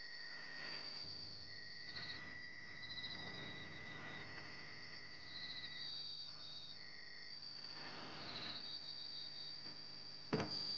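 Crickets chirping in steady, high-pitched trills at two different pitches, faint night ambience; the lower trill breaks off about six seconds in and returns briefly near seven seconds.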